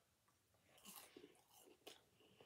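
Faint close-up chewing of a curly fry dipped in cheese sauce, with soft wet mouth clicks starting about a second in and a sharper click near the end.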